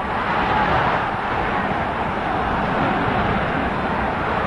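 Steady stadium crowd noise from a football match broadcast, an even wash of sound with no single event standing out.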